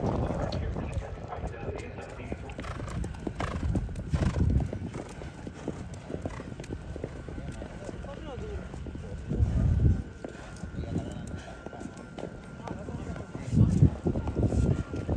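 Thoroughbred racehorse's hooves clip-clopping, with people's voices in the background.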